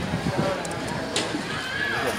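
People talking, with a sharp click just past a second in.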